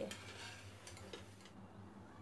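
Faint sizzle of hot oil in a steel pan with a few light clicks of a wire skimmer as fried besan fritters are lifted out; it fades about a second and a half in.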